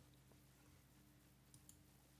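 Near silence: faint room tone with a low hum, and two faint quick clicks about three-quarters of the way through.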